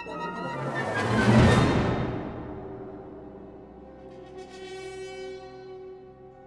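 Symphony orchestra playing a crescendo that peaks in a loud crash about a second and a half in. The crash rings and dies away into quieter held tones, and a higher layer of tones enters in the second half.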